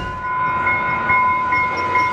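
UTA FrontRunner commuter train passing a grade crossing, its horn held as one steady chord of several tones over the rumble of the train.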